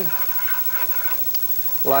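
Faint sizzle of minced onion and garlic sautéing in hot oil in a frying pan, with one light tick of the stirring utensil against the pan about halfway through.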